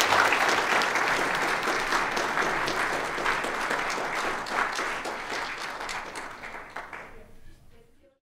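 Audience applauding, many hands clapping together, the applause slowly dying away and stopping shortly before the end.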